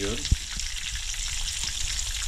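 Breaded fish fillets shallow-frying in oil in a skillet, a steady sizzling crackle, with one sharp click about a third of a second in.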